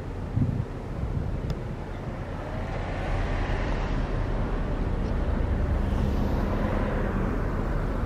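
Low, steady engine rumble that grows gradually louder, with wind on the microphone and a brief low thump about half a second in.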